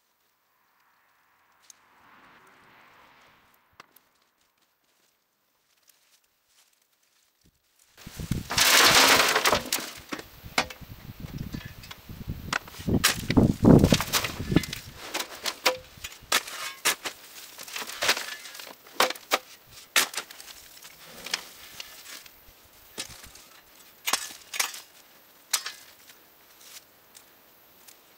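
Dry, stony garden soil being dug through and tossed about: starting about eight seconds in, a long run of clicks, knocks and scrapes as clods and stones strike one another, with two louder rushing scrapes.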